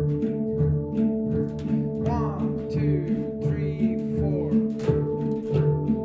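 A group of handpans played together in a steady, repeating rhythm. Struck steel notes ring on and overlap, with low notes alternating in an even pulse about twice a second.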